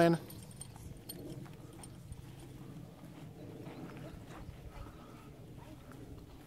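A horse walking on the soft dirt of an arena, its hooves thudding in a quiet clip-clop.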